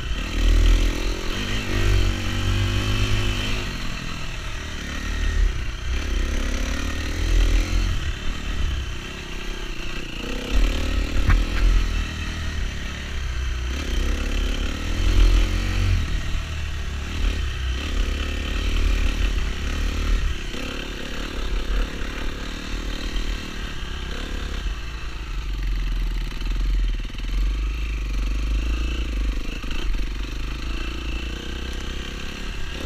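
Off-road dirt bike engine being ridden hard, revving up and dropping back over and over, its pitch climbing and falling every second or two over a steady low rumble.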